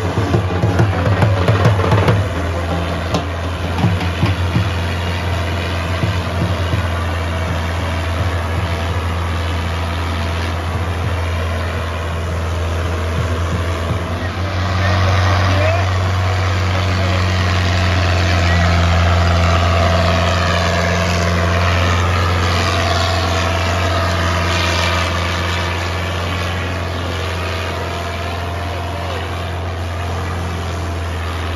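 New Holland 640 tractor's diesel engine working hard under load as it drags a disc harrow through soil: a steady, deep drone that gets louder about halfway through.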